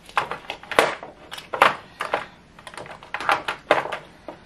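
Lip gloss and lipstick tubes clicking and clattering against each other and the clear plastic drawer organizer as they are picked up and set down by hand: irregular sharp clicks, several a second.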